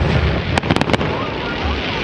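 Aerial fireworks going off: a quick run of five or six sharp cracks about half a second to a second in, over a steady crackling hiss.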